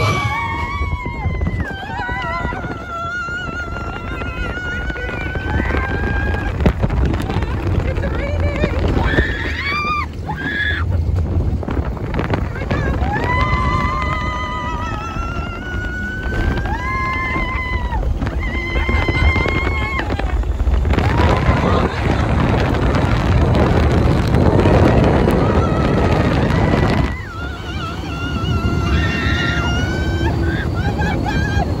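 Test Track ride vehicle on its outdoor high-speed run: long sliding, held vocal cries over the car's onboard soundtrack. From about 21 s a loud rush of wind and track noise takes over at top speed, then drops off sharply near 27 s.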